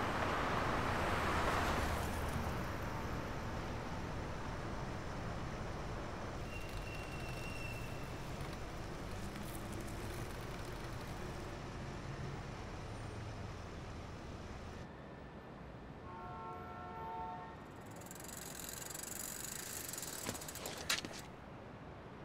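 Car engine and road noise from an SUV driving slowly beside a bicycle, steady and slowly fading. About sixteen seconds in, a car horn sounds briefly, and a sharp click comes near the end.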